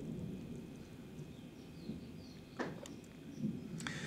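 Faint low rumble of distant thunder, slowly dying away, with a few faint high chirps in the middle and two light clicks, the second near the end.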